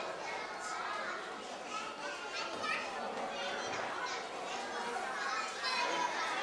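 Many young children talking and chattering at once, a steady babble of small voices.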